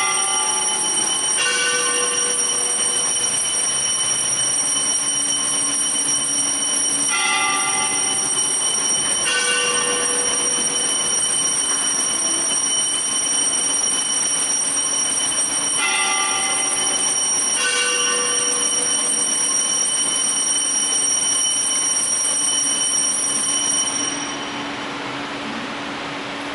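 Altar bells rung for the elevation of the chalice at the consecration: three pairs of struck, ringing chimes, the strikes of each pair about two seconds apart, over a steady high ringing that stops shortly before the end.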